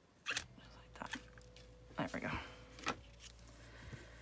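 Metal hand punch for setting eyelets, with a pink handle, clicking as it is squeezed through a layered paper tag to make the eyelet hole, then knocking as it is handled and set down. A sharp click about a third of a second in is the loudest, with softer clicks and knocks following about every second.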